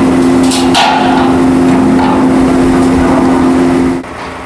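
Construction-site machinery running with a steady drone of two held low tones. A few knocks sound about half a second in.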